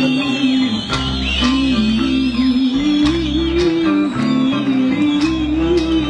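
A live band playing a song with a wavering lead melody over a steady bass line and a regular drum beat.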